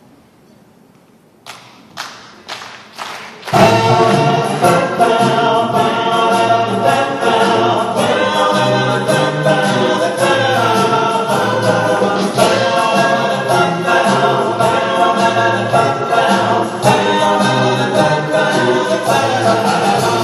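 Male vocal ensemble singing a cappella in close harmony over a steady sung bass line. The song starts about three and a half seconds in, after four short sharp clicks about half a second apart.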